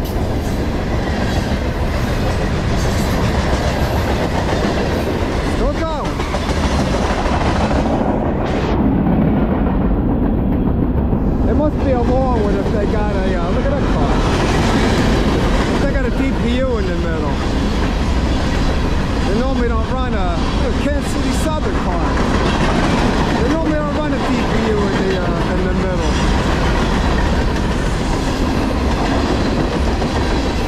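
Long freight train of covered hoppers and tank cars rolling past close by: a steady rumble and clatter of wheels on rail. From about twelve seconds in, wavering squeals rise and fall over the rumble.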